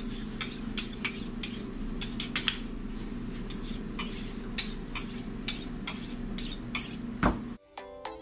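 Kitchen knives and tools clinking and clattering on a tray as they are handled, about two to three irregular clicks a second over a steady low hum. A louder knock comes near the end, then the sound cuts off abruptly into music.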